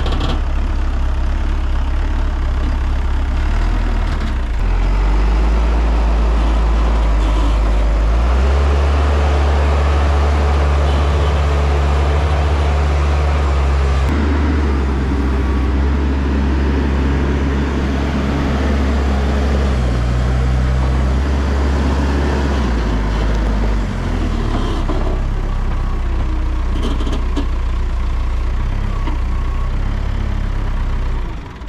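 Diesel engine of a Lull telehandler running as the machine drives across gravel, a steady deep engine note that climbs a few seconds in and eases back about three-quarters of the way through.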